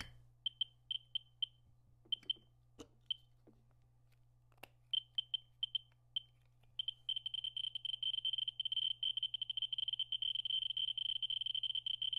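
Radiation survey meter's audio clicks counting beta and gamma from uranium ore through the probe's cover. A few scattered clicks come at first. From about seven seconds in, as the ore is brought to the probe, they come so fast that they run together into an almost continuous high buzz. A couple of faint knocks come from handling.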